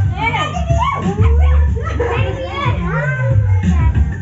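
Excited children's voices shouting and squealing over loud party music with a heavy bass line.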